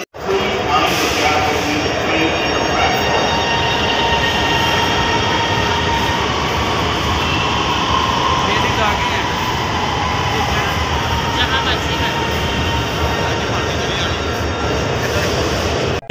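Orange Line electric metro train moving along the station platform behind the platform screen doors: a loud, steady rumble and rush of wheels and traction motors, with a faint whine running through it.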